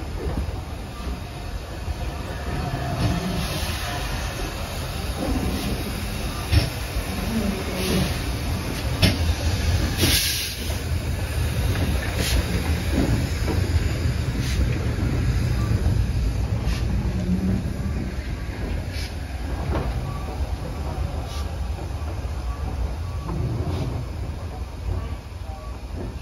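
A heritage steam train's coaches and then its locomotive tender rolling past close by, a steady rumble broken by irregular clicks and clanks of the wheels over rail joints.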